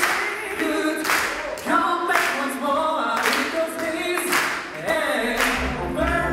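Two men singing a cappella into microphones over hand claps on the beat, about one clap a second. Near the end a low bass line comes in under the voices.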